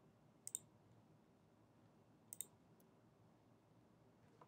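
Two faint pairs of quick computer mouse clicks, about half a second in and again about two seconds later, against near silence.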